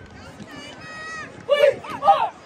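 Sideline cheer chant: after a brief lull, one high drawn-out call, then loud rhythmic unison shouts start up again about a second and a half in.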